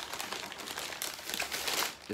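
Newspaper packing crinkling and rustling as it is pulled open by hand, with scattered irregular crackles.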